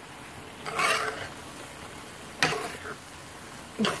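A large metal spoon scraping and stirring rice in a metal pot, with a sharp clink of the spoon against the pan about two and a half seconds in, over a faint steady sizzle. The rice's cooking liquid has dried off and it is being gathered into a mound before the pot is covered.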